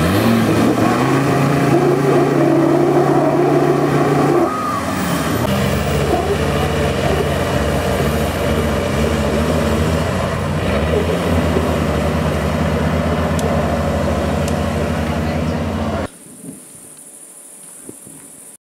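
Off-road trial 4x4 special's engine revving hard under load as it climbs a steep dirt slope, its note shifting about four and a half seconds in. The engine sound cuts off abruptly near the end.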